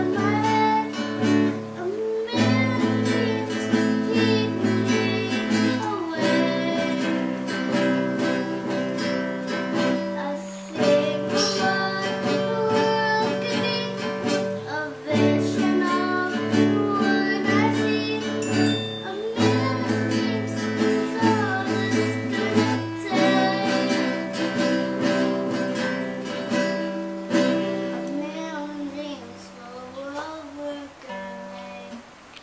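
A young girl singing while strumming chords on a nylon-string classical guitar, the chords changing every couple of seconds. The playing eases off a little near the end.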